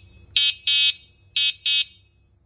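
Yolin dual-battery e-bike's horn beeping: two quick double beeps about a second apart, high-pitched.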